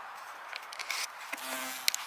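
A bee's wings buzzing in one short, steady hum of about half a second, a little past the middle, as the revived bee takes off from the water dish. A few light clicks come before it and one just before the end.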